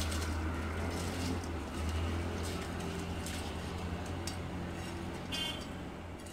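Water at a rolling boil in a large aluminium pot, a steady low rumble, as soaked basmati rice is tipped in from a bowl with a few small splashes and clinks.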